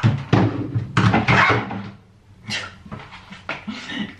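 Plastic mixing bowls and a colander knocking and rattling as they are pulled out of a kitchen cupboard, loudest in the first two seconds, with a woman making playful non-word vocal noises over it.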